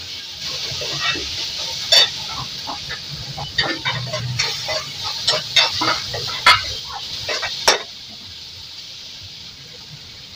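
Food sizzling in a metal kadhai on a gas stove, with a metal spoon clinking and scraping against the pan as it is stirred. The irregular clinks come thick between about two and eight seconds in, then the stirring stops and only a quieter hiss remains.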